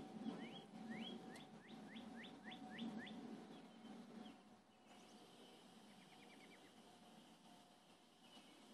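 A songbird singing: a run of about nine rising whistled notes, roughly three a second, over a faint low rumble, then a short fast trill about six seconds in.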